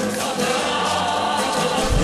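Music with a choir singing long held notes in chords.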